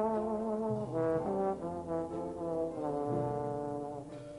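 Trombone playing a jazz solo line in a swing/Dixieland style. It holds a note with vibrato, plays a quick run of shorter notes from about a second in, and settles on another long note near the end.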